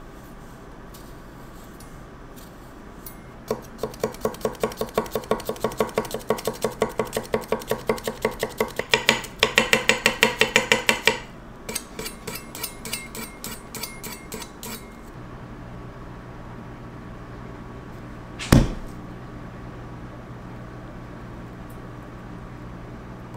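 Chef's knife slicing garlic cloves on an end-grain wooden cutting board: quick, even taps of the blade on the board, about four to five a second, growing louder, then lighter and faster taps. One loud single knock comes near the end, over a low steady hum.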